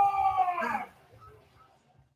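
A man's voice drawing out one high sound that falls in pitch, breaking off about a second in; then near silence.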